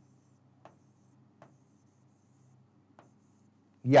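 Pen writing on an interactive display screen: faint light taps and scratches as numbers are written, over a low steady hum.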